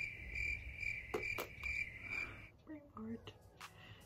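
A high, steady trilling tone, like an insect's song, pulsing about three times a second and stopping about two and a half seconds in, with a couple of soft clicks during it.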